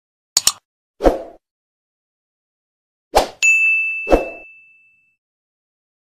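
Sound effects of an animated subscribe-button prompt: a quick double click, a dull thump, then another click followed by a bright ding that rings and fades over about a second and a half, with a second dull thump under it.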